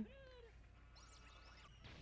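Near silence: room tone, with a faint, brief falling high-pitched glide right at the start and a few faint pitched squeaks near the middle.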